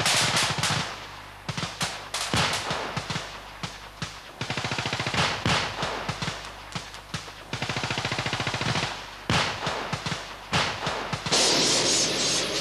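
Staged stunt pyrotechnics: sharp cracks and rapid bursts of gunfire as charges go off, with a larger blast near the end.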